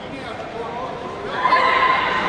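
A loud, held shout starting about one and a half seconds in, over background talk in the hall.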